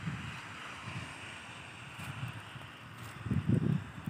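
Wind buffeting the microphone in uneven gusts, a low rumble over a faint steady hiss, with the strongest gust near the end.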